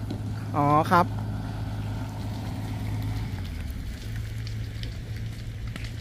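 Fire truck engine running at idle, a steady low hum whose pitch shifts slightly about three and a half seconds in.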